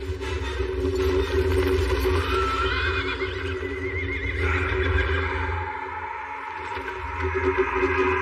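Horses neighing, with a wavering whinny about two to three seconds in, over film score music that holds a steady low drone.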